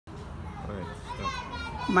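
Faint background chatter of children's voices, with a man's voice starting to speak right at the end.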